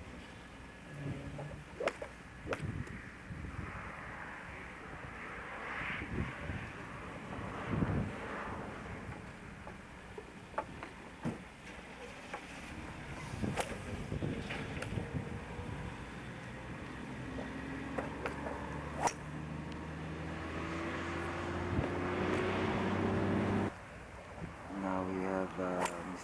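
Outdoor ambience with scattered sharp clicks. In the last third a steady engine hum slowly rises in pitch and grows louder, then cuts off suddenly at the end.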